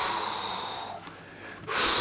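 Loud, breathy exhales like sighs, close to the microphone: one fading out over the first second, then a second one starting near the end.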